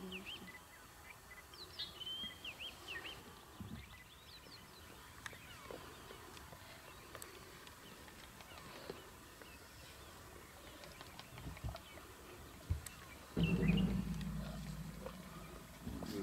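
Faint bush ambience with small birds chirping in short rising and falling calls during the first few seconds. Near the end a steady low engine hum starts suddenly and runs on, a vehicle idling close by.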